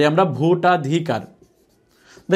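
A man's voice speaking for about a second, then a quiet stretch with faint squeaks of a marker writing on a whiteboard.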